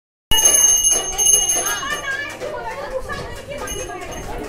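A small bell rings with a high, steady ring for the first two seconds, then dies away and sounds again briefly near the end, over women's voices talking.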